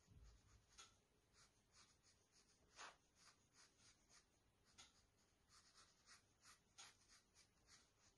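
Faint, quick strokes of a watercolour brush on textured watercolour paper, about three short brushing sounds a second at an uneven pace, one stroke about three seconds in louder than the rest.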